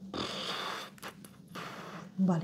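A person breathing out sharply through the nose for just under a second, then a single light click of a game piece on the table.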